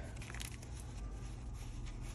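Faint rustling of paper bills and envelopes being handled, with a few light crinkles, over a steady low room hum.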